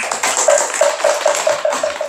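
A congregation applauding, with a sharper, pitched tapping repeating evenly about five times a second running through it.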